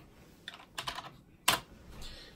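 Computer keyboard keystrokes: a short command typed and Enter pressed, four clicks within about a second, the last and loudest about one and a half seconds in.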